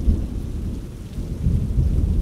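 Low rolling thunder over a faint hiss of rain, a storm ambience bed. The rumble dips about a second in and swells again after.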